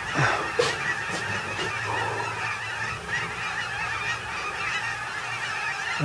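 A large flock of snow geese calling overhead: a dense chorus of many overlapping high honks, with no single call standing out.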